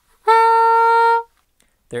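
Bb soprano saxophone playing one held middle C (sounding concert B-flat), a steady note about a second long that starts a quarter second in and stops cleanly.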